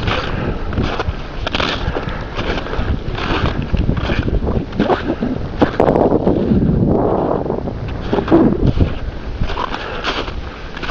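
Boots crunching in snow at a steady walking pace, about one step every 0.7 seconds, with wind rumbling on the microphone.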